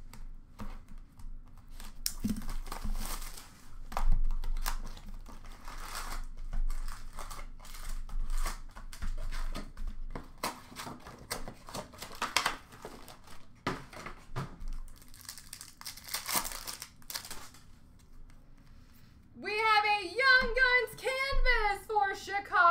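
Plastic wrapping on hockey card boxes and packs crinkling and tearing as they are opened by hand: a run of irregular sharp crackles with short pauses. A voice starts speaking near the end.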